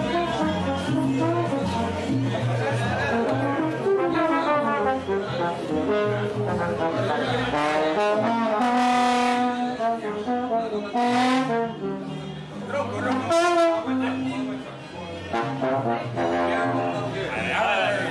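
Trombone played informally, a run of changing notes with a couple of longer held tones, over people talking.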